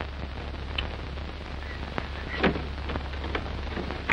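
Surface noise of an old optical film soundtrack: steady hiss and crackle over a low hum, with scattered clicks. A brief voice-like sound comes about two and a half seconds in.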